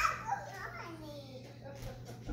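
A small child's faint voice making a drawn-out, falling vocal sound during play, with no clear words.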